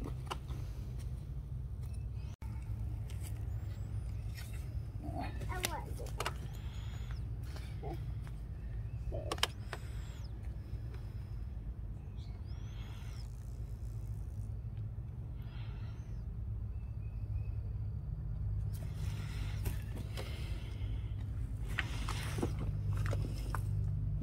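Tractor engine idling steadily with a low rumble, with scattered light knocks and taps over it.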